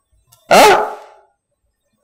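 A single short questioning "aah?" from a man, the pitch rising then falling, with quiet before and after.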